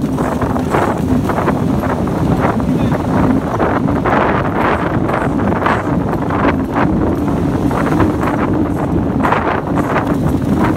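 Wind buffeting the microphone, loud and rough, with irregular knocks and surf in the background.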